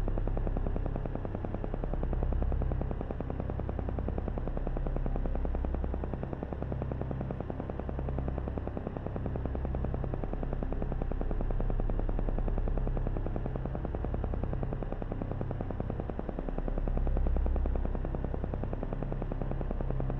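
Soft background meditation music: a low drone that slowly swells and fades, with a fast, even pulsing running through it.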